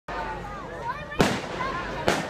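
Aerial firework shell bursting with one sharp bang about a second in, trailing off in echo.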